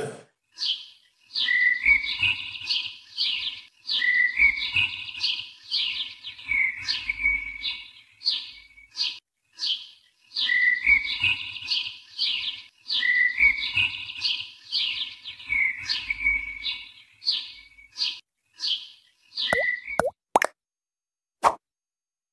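An outro soundtrack of short, high plopping chirps with small pitch glides over soft low thumps, repeating in a loop about every two and a half seconds. A few quick sweeping whooshes come near the end.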